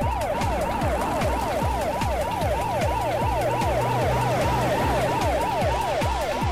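Police car siren yelping, a fast, even rise and fall of pitch about three times a second, over background music with a steady, heavy, fast beat.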